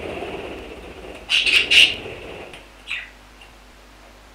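Budgerigars chattering, with a cluster of loud, sharp squawks about a second and a half in and a short chirp near three seconds, over a rough scuffling noise for the first two and a half seconds.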